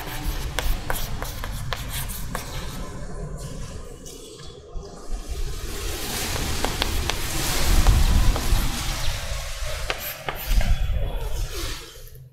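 Chalk writing on a chalkboard: a run of short taps and clicks as letters are formed, then a longer, louder scratchy stretch of chalk strokes in the middle.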